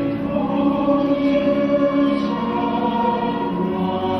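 Stage-musical music with a choir singing long held notes over the accompaniment, the chord shifting about three and a half seconds in.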